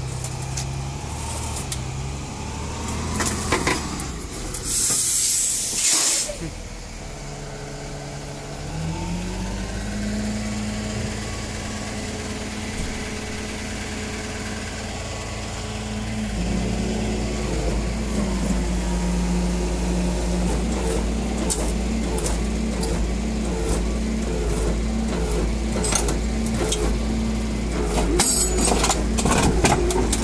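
Flatbed tow truck's engine running at raised idle to work the winch, rising in pitch about nine seconds in and settling into a deeper, louder drone about sixteen seconds in as the car is dragged up over the concrete barrier. A loud hiss of air about five seconds in, and clicks and scraping near the end.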